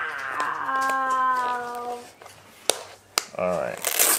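A voice holds one drawn-out, slightly falling note, then three sharp clicks follow in the second half: the ratchet strap buckle of a Peloton cycling shoe being worked.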